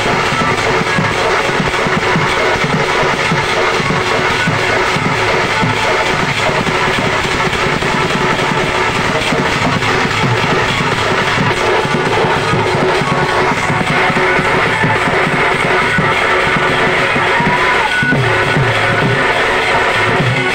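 Live Odia Danda Nrutya folk music: a large barrel-shaped dhol drum beaten with a stick on one head and the hand on the other in a steady, busy rhythm, under continuous held tones from the accompanying melody instruments.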